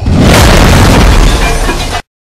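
Loud explosion with a deep rumble, a building-collapse sound effect, starting suddenly and cutting off abruptly.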